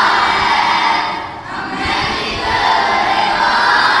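A group of boys chanting a tarana loudly together in unison, in two long phrases with a short break about a second and a half in.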